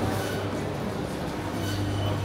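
Indoor market hall ambience: a steady low hum under faint scattered chatter of shoppers.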